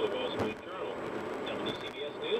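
A radio voice talking through a car's speakers, over the steady road and tyre noise inside a moving car's cabin.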